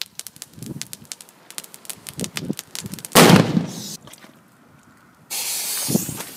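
A Cobra 6 firecracker exploding about three seconds in: one very loud sharp bang that dies away over most of a second. Small scattered ticks and crackles come before it, and near the end a steady rushing noise starts suddenly.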